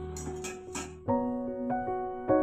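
Background keyboard music with sustained piano-like chords. A louder new chord enters about a second in and another follows about half a second later. In the first second there are two brief noisy bursts.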